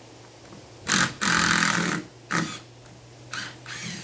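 Power drill run in several short bursts into a wooden post: two close together about a second in, the second one longest, then a brief burst and two more short ones near the end.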